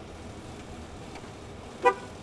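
A single short car horn toot near the end, loud and brief, over a steady low background rumble.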